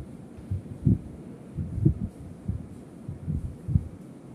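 Whiteboard being wiped with a board eraser, each stroke knocking the board with a dull low thud, about ten irregular thuds in all.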